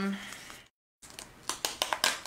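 A word trailing off, a moment of dead silence, then from about a second in a string of light clicks and rustles of card and clear plastic being handled and pressed flat on a cutting mat.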